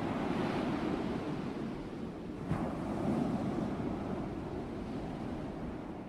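Sea waves breaking and washing on the shore, swelling near the start and again about halfway through.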